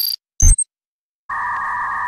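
Electronic intro sound effects: a glitchy noise burst with a high tone that cuts off at the start, a short thump with a high blip about half a second in, then a steady electronic buzzing tone that begins past the middle.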